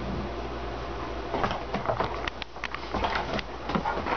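Irregular knocks, taps and rustling begin about a second in: a dog scrambling off a sofa and tussling with a cushion and a leather pouf.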